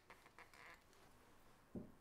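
Near silence: room tone, with one faint, short sound near the end.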